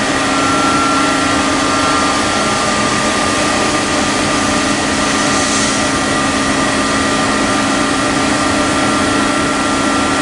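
Heckler & Koch BA 40 vertical machining center running with its spindle stopped: a steady machine hum with several steady whining tones. A brief hiss comes about five and a half seconds in.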